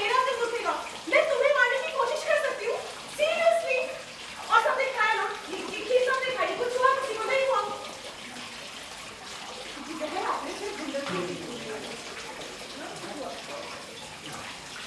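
A woman speaking loudly and heatedly in Hindi for about eight seconds, then quieter talk over a steady hiss.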